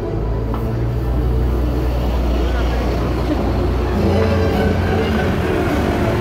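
City street traffic: a motor vehicle's engine running close by, a steady low hum that steps up in pitch about four seconds in, over the voices of a crowd.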